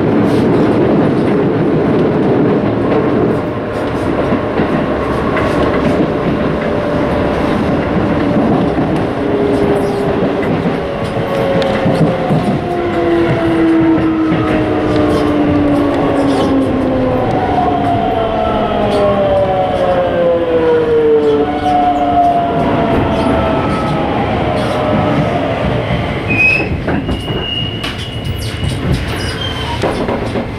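Keisei 3700-series electric train heard from inside the car, running on the rails as it slows into a station. From about ten seconds in, its VVVF inverter motor whine falls steadily in pitch in several layered tones. A brief high squeal comes near the end.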